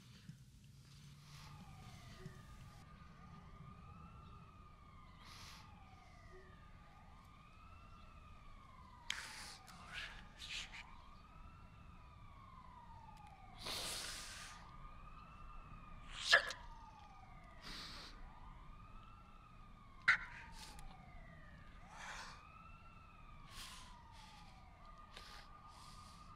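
Several faint emergency-vehicle sirens wailing together, their pitch sweeping up and down in overlapping arcs over one steady held tone. A few short, sharp sounds break through, two of them louder in the second half.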